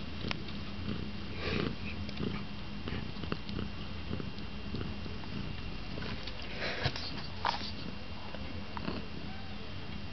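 Four-week-old kittens play-wrestling on a woven seagrass mat: claws and paws scratching and rustling on the matting in short bursts, about a second and a half in and again around seven seconds, with small clicks between. A steady low purr runs underneath.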